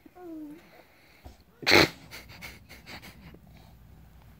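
Baby's effortful vocal sounds while crawling: a short whimper that falls in pitch, then about two seconds in a loud, sharp, breathy burst, followed by a few faint breaths and clicks.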